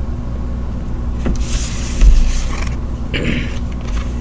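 Playing-card-style tarot cards handled on a wooden tabletop: a light tap, a louder knock about two seconds in, and brief rustles of cards sliding. A steady low hum runs underneath.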